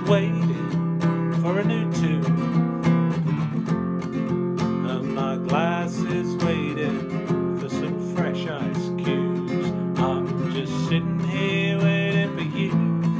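Acoustic guitar strummed and picked in an instrumental passage between the sung lines of a slow song.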